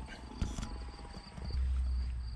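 Handling noise from a plastic hand-held remote being moved in the hand: soft clicks and rubbing, with a small click about half a second in and a low microphone rumble near the end. Faint insects chirp steadily in the background.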